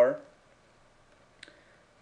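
The tail of a spoken word fading out, then near silence broken by a single short, faint click about one and a half seconds in.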